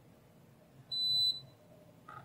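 Kaiweets KM601 digital multimeter's continuity beeper sounding one steady high-pitched beep of about half a second, about a second in, signalling continuity between the probed IC lead and adapter pad.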